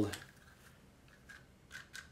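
A few faint clicks of small plastic toy parts being handled: a gumball-machine mini helmet and its plastic buggy frame, picked up and fitted together.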